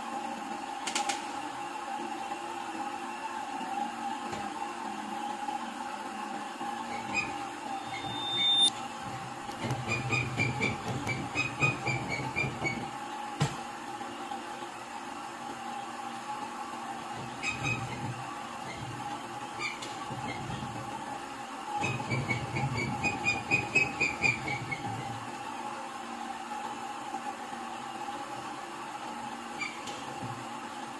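Heidelberg offset-letterset printing press running with a steady hum, its inking rollers turning. Twice, about a third of the way in and again about three-quarters through, there are spells of rapid, even clatter lasting a few seconds.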